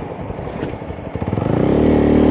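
Honda Grom's single-cylinder 125 cc engine, with a loud exhaust, running at low revs. About a second and a half in, the revs rise as the bike accelerates.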